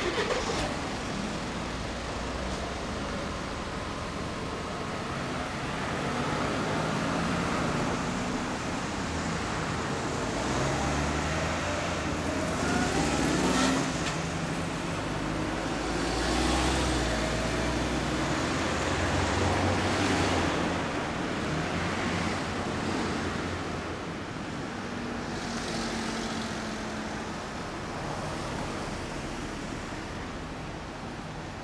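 Road traffic going by: a steady rumble of engines and tyres that swells and fades as several vehicles pass one after another.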